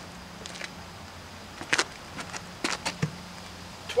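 A few short knocks and scuffs, a close pair about two seconds in and more shortly after, as a large off-road wheel and tire is carried over and set down.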